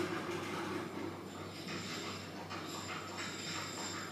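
A dog making short, soft sounds, several in quick succession from about a second and a half in. A low steady hum is heard at first and stops about a second in.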